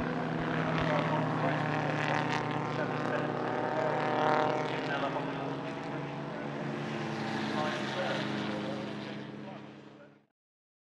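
Engines of pre-war sports racing cars, among them a Talbot-Lago, running at speed as the cars pass on the circuit. A steady multi-note engine sound swells briefly about four seconds in and fades out near the end.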